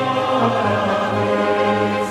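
Mixed choir singing sustained, slowly moving chords of 19th-century Catalan sacred music, accompanied by a chamber orchestra.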